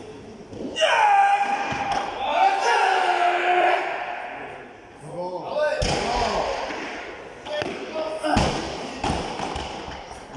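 A 210 kg barbell loaded with rubber bumper plates is dropped from overhead onto a lifting platform, landing with a heavy thump about eight seconds in and bouncing a few times. A sharper thump comes about six seconds in. Loud, drawn-out shouts of encouragement come in the first few seconds, as the lifter stands up from the clean.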